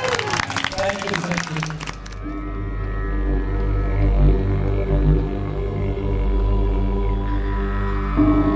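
Audience applause, clapping with a few voices, for about two seconds, then an abrupt cut to music: a steady low drone with long held tones.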